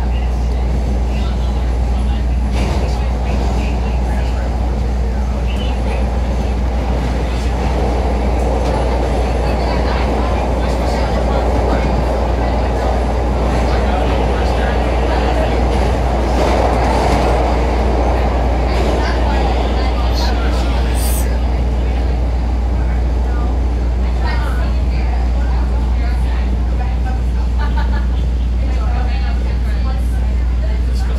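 CTA Red Line subway train running through the tunnel between stations. A steady low hum sits under the rumble of wheels on rail, which grows louder in the middle of the run and eases toward the end as the train slows into the next station. Occasional clicks come from the wheels crossing rail joints.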